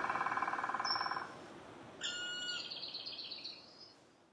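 The song's last chord fades out. A bird then gives a short high note about a second in, and from about two seconds in a high call with a fast trill that stops just before the end.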